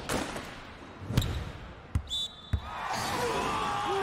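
Anime volleyball sound effects: a served ball clipping the net tape and dropping in, heard as a few sharp ball impacts spread over the first two and a half seconds, with a short high whistle about two seconds in. Players' shouting rises near the end as the net serve scores.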